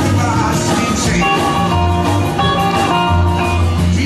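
Rockabilly band playing live, with acoustic and electric guitars over upright bass notes and drums.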